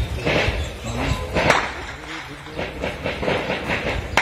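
Voices with several sharp bangs, the loudest about a second and a half in.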